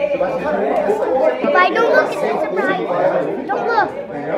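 Overlapping chatter: several people talking at once in a room.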